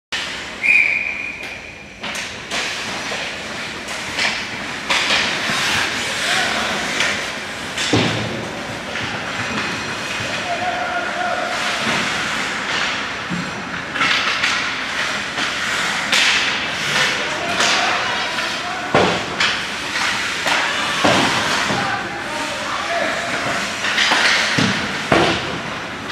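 Ice hockey play on a rink: skate blades on ice, sticks and puck clacking, and repeated thuds against the boards and glass, with voices around the rink.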